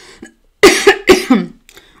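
A woman coughing: two coughs in quick succession, about half a second apart, starting a little past halfway.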